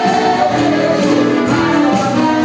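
A church choir singing a gospel song together into microphones, amplified through PA loudspeakers, with long held notes over a steady beat.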